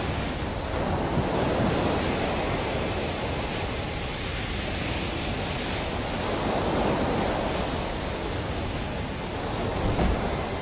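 Sea surf rushing and breaking, a steady roar of water with slow swells in loudness.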